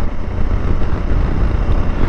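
Steady wind rush and running noise of a 650cc single-cylinder motorcycle at about 50 km/h, picked up by a Purple Panda lavalier mic inside the rider's helmet: an even, low-heavy rush with no popping or crackle.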